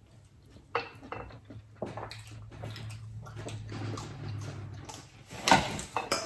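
Close-miked wet eating sounds: lips smacking and fingers being sucked clean of seafood-boil sauce, with small clicks throughout. A low steady hum runs under the middle, and there is a louder rustle near the end as a paper towel is grabbed.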